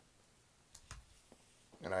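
A few short, soft clicks about a second in, while a pipe is held at the mouth and puffed, then a man starts speaking near the end.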